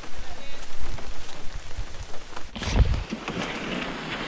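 Heavy rain falling steadily. About two and a half seconds in there is a low thump, after which the rain is fainter.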